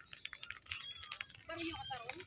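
Iron crowbar being jabbed into grassy soil to dig a hole: a run of faint clicks and crunches as the bar breaks the earth, with faint voices in the background.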